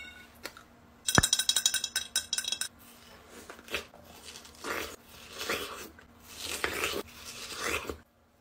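Biting into and chewing crisp watermelon slices, a series of wet crunching strokes that come more often and louder toward the end. About a second in, a brief bright jingling run rings out.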